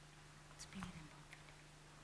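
Near silence: room tone with a steady low hum and faint hiss, and a faint, brief sound a little under a second in.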